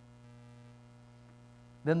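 Faint steady electrical mains hum, a low buzz from the sound system, heard through a pause in speech. A man's voice comes in near the end.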